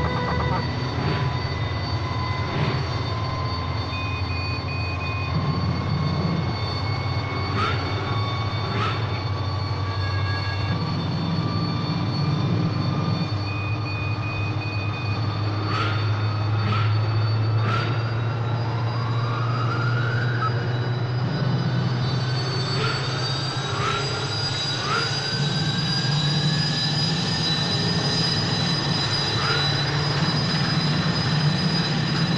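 A centrifuge trainer's motor spins with a low steady hum and a whine that climbs slowly in pitch as it speeds up. Short electronic beeps from the control console and occasional sharp clicks sound over it.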